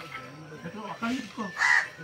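A crow caws once, short and loud, about a second and a half in.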